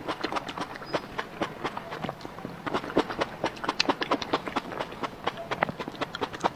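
Close-miked eating mouth sounds: wet chewing, lip smacks and tongue clicks in a quick irregular run, several a second, busiest and loudest through the middle.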